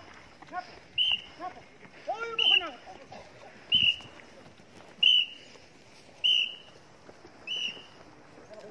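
Six short, shrill whistle blasts, one about every second and a quarter, pacing a group of men. Shouts and chanting from the group are heard between the first few blasts.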